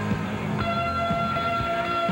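Live rock band playing: a held high note, with a new one coming in about half a second in, over bass and drum hits.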